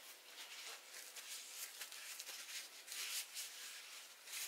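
Faint rustling and a few light ticks of handling noise in an otherwise quiet room.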